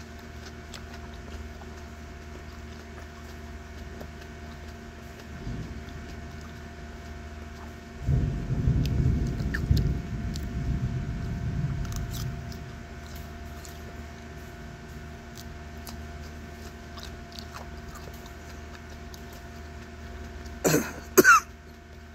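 A man coughs twice, sharply, near the end, his throat irritated by the superhot chili pepper he is eating. A low rumble lasts about four seconds in the middle, over a steady background hum.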